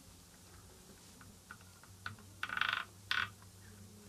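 A 3D-printed resin wax-removal screw being twisted into the wax-sealed ferrite core of a tube radio's IF transformer: a few faint ticks, then a short scraping creak about two and a half seconds in and a briefer one just after three seconds, as the tool bites through the wax.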